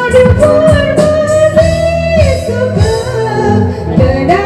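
A woman singing a gospel song into a microphone over instrumental backing music with a steady beat; she holds one long note for about two seconds early in the phrase.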